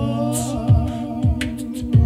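Live acoustic pop: a wordless sung note held with vibrato over strummed acoustic guitar, with a low thump on each beat.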